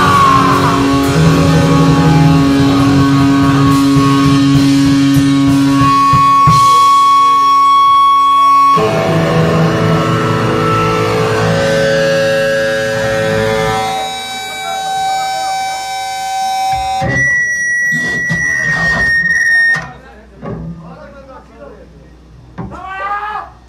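Punk band playing live: distorted guitar with long ringing held notes over bass and drums. About two seconds before the end a high, steady guitar feedback whine cuts off and the music stops, leaving voices in the room.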